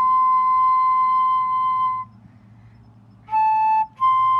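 Solo concert flute playing a slow melody: a long held high note for about two seconds, a pause, then a short slightly lower note near the end, heard over a video call.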